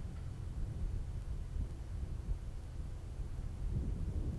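Steady low rumble of wind buffeting an outdoor microphone.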